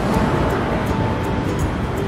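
Street noise of road traffic and wind rumble on the microphone, with one steady tone held for about the first second and a half.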